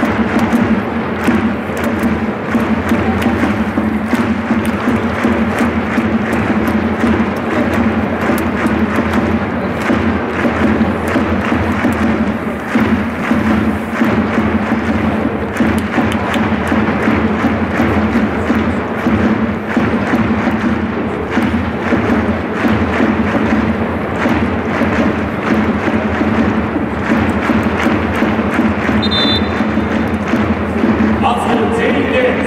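Loud, steady stadium sound: music with thudding drum beats over the noise of a crowd in the stands.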